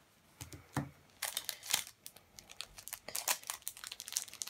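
Plastic shrink wrap being torn and crinkled off a deck of board-game cards: a few faint clicks, then irregular crackling from about a second in.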